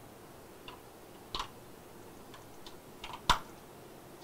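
A few scattered fingertip taps and clicks on a touchscreen device, the loudest a sharp knock just over three seconds in.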